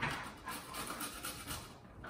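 A carrot being rubbed against a metal box grater, giving a soft, repeated rasp, with a dog panting at the same time.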